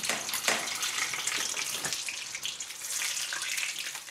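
Water running and splashing, an irregular hiss with small spatters.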